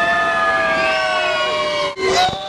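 Several riders screaming at once in one long held scream, the pitches sliding slowly downward, on a water ride's drop.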